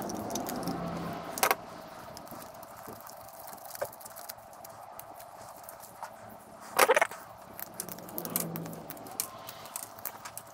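Small parts clicking and rattling as gloved hands pick components and wire pieces out of a stripped VCR's plastic chassis. There are light scattered clicks throughout, with a sharp clack about a second and a half in and a short cluster of louder clatter near seven seconds.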